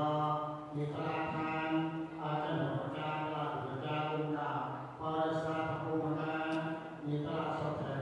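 A Buddhist monk chanting a recitation into a microphone. His voice is amplified and comes in held, sing-song phrases of a second or two, broken by short pauses.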